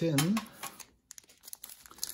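Crinkling of a trading-card pack's foil wrapper as it is handled: a quick run of crackles about half a second in, then fainter scattered ones.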